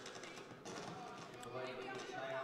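Basketball game sound in a gymnasium: faint voices from the court and stands, with a few light knocks of the ball and shoes on the hardwood floor.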